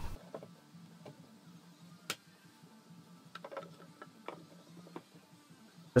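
Faint, scattered clicks and light knocks of pallet-wood boards being handled and laid on a wooden nesting box, the sharpest knock about two seconds in.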